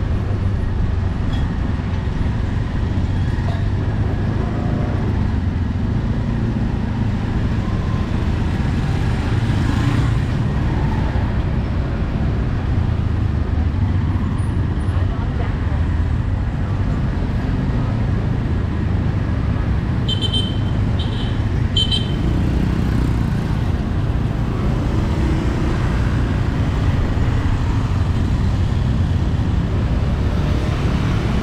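Steady low rumble of engine and road noise while riding through busy city traffic of motorbikes and tuk-tuks. About twenty seconds in, a horn beeps three short times.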